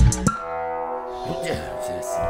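Hip-hop backing track whose drums cut out about a quarter second in, leaving a sustained droning synth chord with low notes that bend up and down in pitch.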